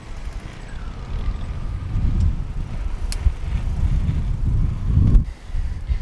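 Wind buffeting the microphone of a handlebar-mounted camera on a moving bicycle: a low, unsteady rumble.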